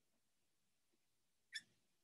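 Near silence: room tone, with one brief faint click near the end.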